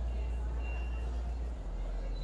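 A steady low rumble, easing slightly about one and a half seconds in, with indistinct voices in the background.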